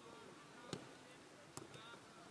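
A football being kicked on a grass pitch: a sharp thud under a second in and a weaker one near the end, over faint background chirping.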